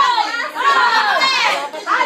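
Excited, high-pitched voices of several people calling out over each other.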